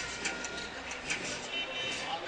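Crowd murmur and general noise of a ballpark crowd, a steady even wash of sound.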